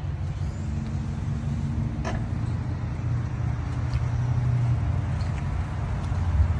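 A steady low engine rumble of a vehicle idling close by, with a faint click about two seconds in.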